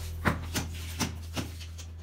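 A wheeled suitcase being handled by its telescopic handle: about five sharp knocks and clicks, roughly two a second, over a low steady hum.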